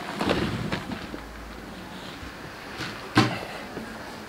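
Things being handled and shifted on a tabletop: rustling and light clatter in the first second, then a single sharp knock a little after three seconds.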